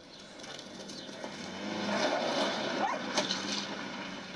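A motor vehicle driving past, its noise building to a peak about two seconds in and then fading, with a brief sharp sound a little after three seconds.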